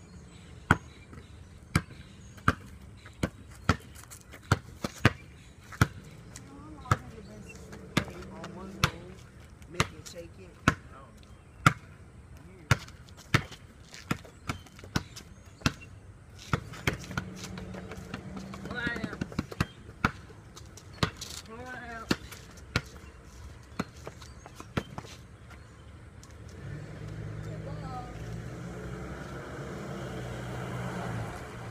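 A basketball dribbled on concrete, bouncing steadily about once a second, stopping a few seconds before the end. Near the end a vehicle engine's low rumble comes in as a mail truck pulls up.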